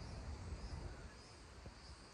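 Quiet outdoor background: a low rumble on the microphone, with faint high chirps repeating about every half second.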